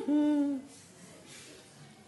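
A person's voice: one short, drawn-out vowel sound that rises and then falls in pitch and holds briefly, stopping about half a second in.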